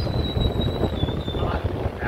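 Low, irregular rumbling noise on the microphone, with a faint steady high-pitched whine.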